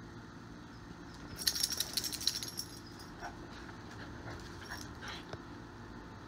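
A small dog moving about: a quick run of light metallic clinks and clicks, like collar tags jingling, for about a second starting a second and a half in, then a few scattered clicks.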